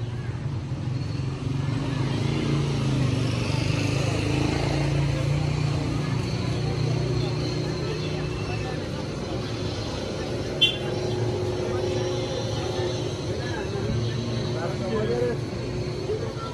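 Busy pedestrian street ambience: passers-by talking in the background over a low, steady rumble of motor traffic, with one brief sharp click about two-thirds of the way through.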